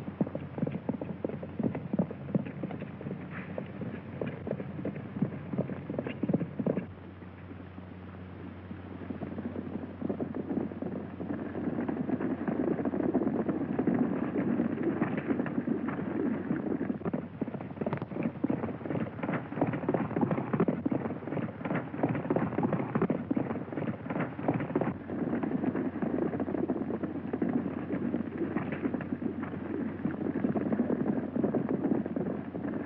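Horses galloping: a fast, dense clatter of hoofbeats. It drops away briefly about seven seconds in, then comes back louder and thicker from about eleven seconds on.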